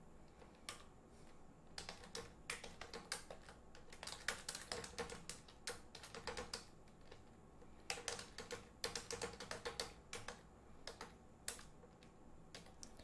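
Typing on a computer keyboard: faint runs of quick keystrokes in several bursts, with short pauses between them.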